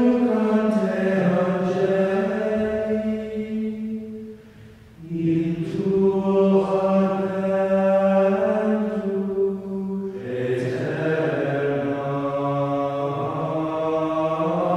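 Sung chant: voices holding long notes in slow phrases, with short breaks about five seconds in and again about ten seconds in.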